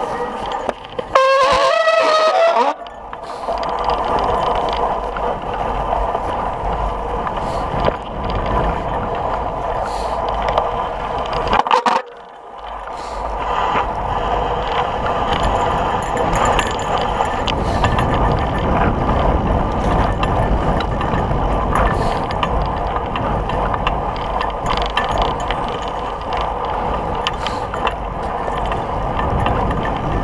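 Bicycle riding along a snowy trail: a steady rolling noise of tyres and drivetrain with a low rumble, and the bike rattling over bumps. About a second in there is a brief, loud, wavering high-pitched squeal.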